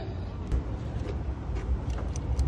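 Low steady background rumble with a few faint small clicks.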